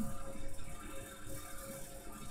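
Faint steady background hiss with a low electrical hum: the recording's room tone in a pause of speech.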